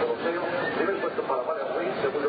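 Race commentator's voice calling a horse race in Spanish, continuous speech with no other clear sound standing out.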